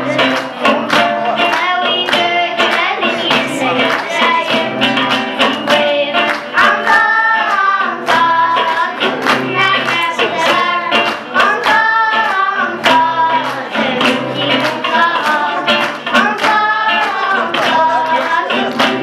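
Live song: young girls singing a melody over acoustic guitars strummed in a steady rhythm.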